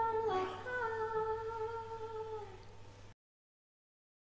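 A woman humming a slow melody of a few long held notes that step downward and fade, before the sound cuts off abruptly about three seconds in.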